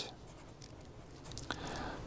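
Felt-tip pen writing on paper: after a quiet second and a half, a small tap of the tip and then a faint scratching stroke.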